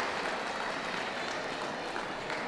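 Audience applauding in a large hall, slowly dying away.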